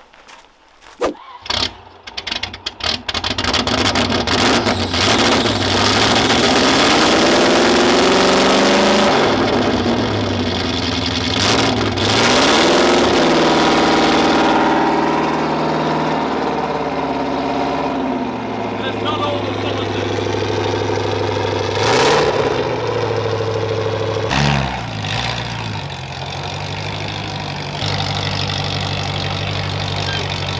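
Land Rover Discovery 1's 3.9-litre V8 cranking and catching after about two and a half months parked, revved several times with the pitch rising and falling, then settling to idle with two short blips of the throttle near the end.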